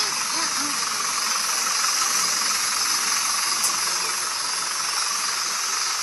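A steady, even hiss throughout, with faint voices briefly showing through it near the start and about four seconds in.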